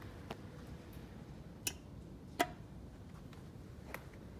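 Four short, sharp clicks over a low steady hum, the loudest about two and a half seconds in.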